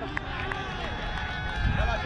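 Faint, distant voices of players across the field, over a low rumble of wind and movement on a helmet-mounted camera's microphone that grows louder near the end as the wearer moves.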